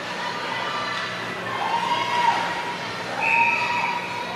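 Referee's whistle blown twice in an ice rink, two short blasts with the second longer and louder, stopping play as a player goes down on the ice.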